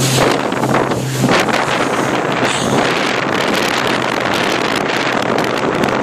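Small motorboat under way at speed: a steady engine hum for about the first second, then heavy wind buffeting on the microphone with water rushing past the hull for the rest.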